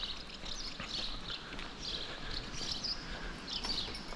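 Small birds chirping in short, scattered calls, over a faint low rumble.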